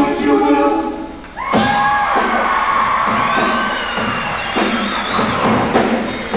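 Live rock band with electric guitar, bass and drums: a full chord with drum hits breaks off about a second in, then long held high notes bend upward in pitch, with drum hits returning near the end.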